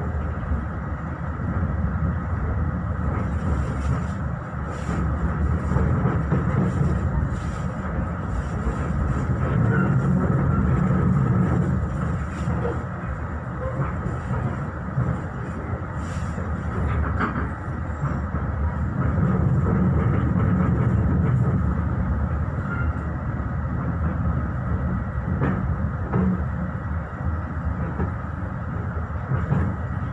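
Inside a moving passenger train coach: the steady low rumble of the wheels running on the rails, swelling and easing, with scattered clicks from rail joints and points.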